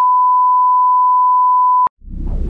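The steady, high-pitched reference test tone that goes with SMPTE colour bars: one unbroken beep at a single pitch that cuts off suddenly near the end.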